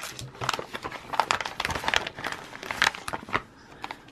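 Small plastic parts bags crinkling and crackling in irregular bursts as they are handled.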